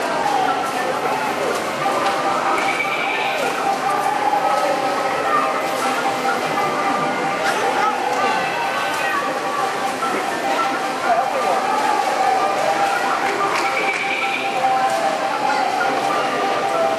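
Busy arcade hall din: many voices chattering at once over electronic game-machine music and jingles, a steady, loud wash with no one voice standing out.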